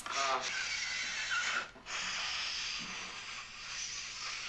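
Steady hissing, rubbing noise on a film's soundtrack, with a brief faint voice at the start and a short break a little before the middle.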